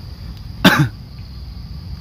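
A man coughs once, short and sharp, about two-thirds of a second in.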